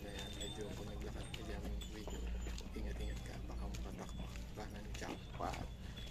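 Ponies' hooves clip-clopping on stone steps, amid people talking.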